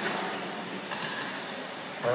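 Radio-controlled cars running on a carpet track, a steady high whirring hiss with a brief louder burst about a second in.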